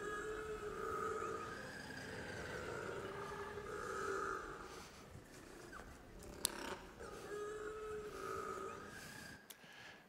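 Recorded calls of a little penguin (kororā): a few long, drawn-out calls, each lasting a second or two, with a pause in the middle.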